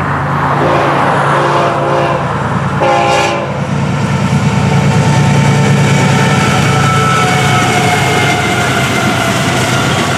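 Florida East Coast GE ES44C4 diesel locomotives passing close by, engines running with a steady low drone, while the horn sounds two chord blasts in the first few seconds.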